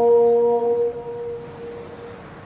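A man's chanting voice holding one long drawn-out note that fades away about a second in, its upper overtones lingering briefly before it dies out.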